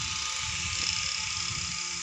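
Steady high-pitched buzzing of insects in the trees, with an uneven rumble of wind on the microphone underneath.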